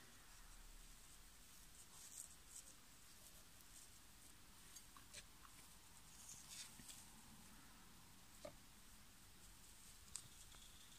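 Near silence with a few faint, scattered rustles and ticks from fingers handling a tarantula's silk egg sac and loose eggs in a plastic cup.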